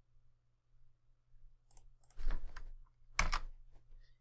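A few computer mouse and keyboard clicks in a quiet room, the loudest a sharp click a little over three seconds in.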